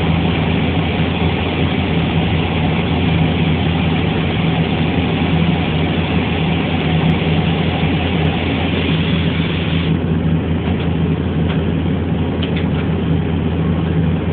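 A heavy engine running steadily at idle: a continuous low drone with a steady low hum.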